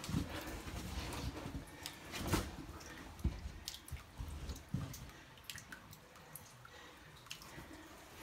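Scattered faint clicks and taps of water dripping between the rocks of a small cave, mixed with scuffs of movement on rock; the loudest is a single knock a little over two seconds in.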